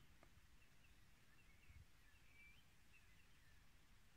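Near silence outdoors, with a few faint, short bird chirps scattered through it.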